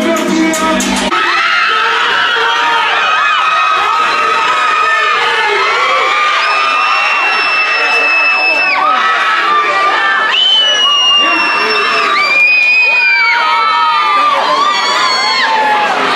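A packed crowd of young students screaming and cheering. A music track with a thumping beat plays for about the first second, then cuts out, leaving high-pitched screams, several of them held for a second or two.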